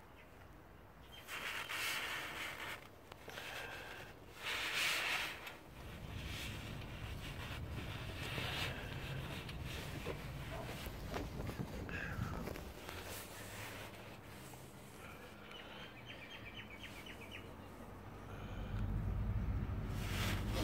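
Rustling and scraping handling noise as a gloved hand and sleeved arm work among the hoses and wiring of a car's engine bay, with two louder bursts of rustle in the first few seconds and a short run of quick small clicks near the end.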